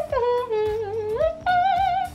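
A high, woman's voice humming or singing a few long held notes, stepping up in pitch about halfway in, the last note held with vibrato.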